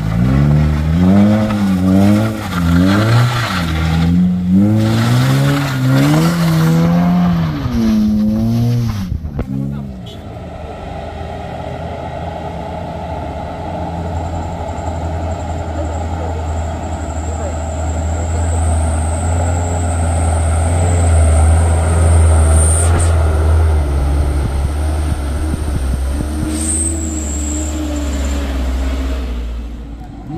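A Honda Jazz hatchback's engine revving up and down again and again as it claws up a steep, rough dirt climb. Then a light truck's diesel engine labours steadily uphill in low gear, growing louder as it nears and then easing off.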